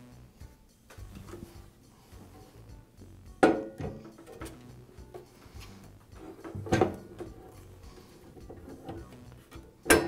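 Two clunks a few seconds apart as a chop saw base is handled and shifted on a wooden workbench, each with a short ring, with faint handling rustle between them.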